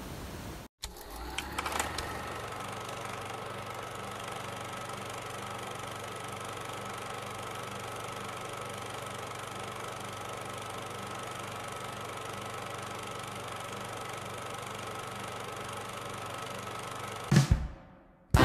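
Steady hum and hiss with a faint held tone, from the quiet opening of a music video playing back, before the band comes in. A few soft clicks come about a second in, and a brief louder sound comes just before the end.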